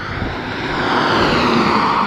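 A car passing close by on an asphalt road at speed: a tyre-and-engine whoosh that swells steadily to its loudest as it goes past near the end, then begins to fade.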